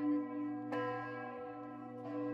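A bell tolling about every 1.3 s, struck once clearly about three-quarters of a second in, with each stroke ringing on into the next over a steady low drone.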